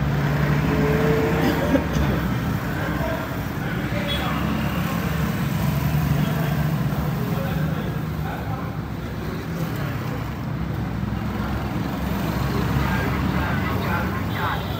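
A steady low engine hum over street noise, with faint voices in the background.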